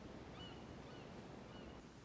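Quiet room tone with three faint, short, high bird chirps about half a second apart.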